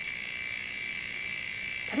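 Spinning letter-wheel web app's sound effect playing through a phone speaker: a steady, high-pitched electronic tone, a really terrible sound.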